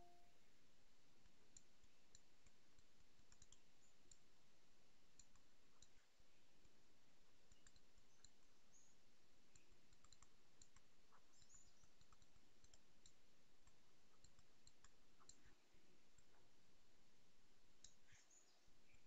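Near silence: room tone with faint, scattered clicks from the digital pen input as handwriting is drawn on a computer slide.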